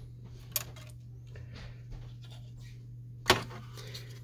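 Plastic parts of an Epson WorkForce WF-2650 printhead carriage being handled by hand: a light click about half a second in and a sharp plastic click a little after three seconds.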